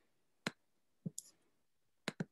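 A few faint short clicks: one about half a second in, then a quick cluster of two or three about a second in.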